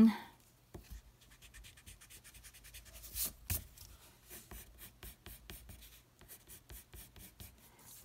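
A wooden pencil scratching on paper in many quick, short strokes, with a couple of louder strokes about three seconds in.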